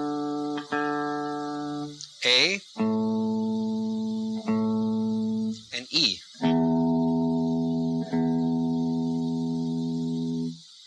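Electric guitar's open strings picked one at a time and left ringing for tuning to A440: the D string, then the A string about three seconds in, then the low E string about six and a half seconds in. Each note is re-picked once while it rings, and each is lower than the last.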